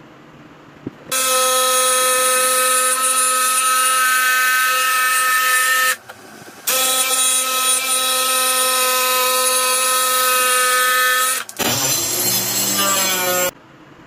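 DeWalt jigsaw cutting plywood, its motor running at a steady pitch in two long stretches with a short stop about six seconds in. Near the end the sound turns lower and wavering before it stops.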